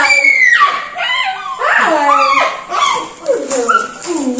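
Small dog whining, a run of high whimpers that each slide down in pitch, about five or six in a row.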